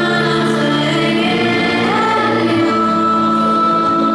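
Music with a choir of voices singing long held notes, accompanying a stage dance; one high note is held through the second half.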